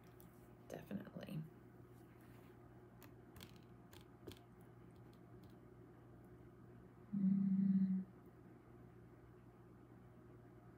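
Quiet crafting-table handling: a few faint clicks and taps as clear acrylic stamps are picked up and set down, with a brief low mutter about a second in. A short steady low hum lasting under a second, the loudest sound, comes about seven seconds in, over a faint constant background hum.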